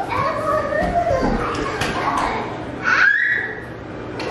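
A toddler babbling without clear words in a high voice, with a short rising squeal about three seconds in.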